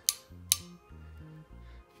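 Ratcheting JST terminal crimping tool clicking twice, sharply, about half a second apart, as a terminal is set in its jaws. Background music with a stepping bass line plays underneath.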